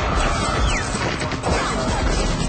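Dense layered sound effects of mechanical clattering and crashing, with a few short gliding electronic tones and a sharp hit about one and a half seconds in.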